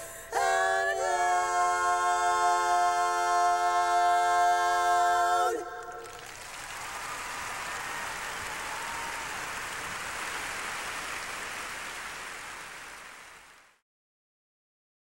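Women's barbershop quartet singing a cappella in four-part harmony, swelling into a held final chord about half a second in and cutting it off together after about five seconds. Audience applause follows and fades out near the end.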